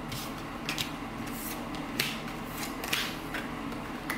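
A deck of tarot cards being shuffled by hand: several short, soft card snaps and slides, the loudest about two seconds in.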